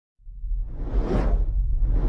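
Cinematic logo-intro sound effect: a whoosh that swells up to a peak about a second in over a deep bass rumble.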